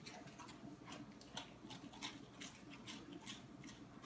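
A dog chewing crackers, with faint, crisp crunches coming irregularly a few times a second.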